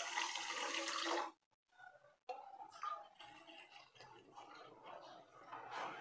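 Water pouring into a stainless-steel kadhai onto a heap of sugar to make sugar syrup. The pour stops about a second in, and faint splashing returns near the end.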